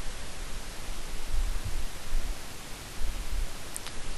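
Steady hiss of a headset microphone's noise floor, with uneven low rumbles and one faint click near the end.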